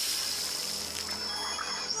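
Soft, steady background music from a cartoon score, held tones without a clear beat.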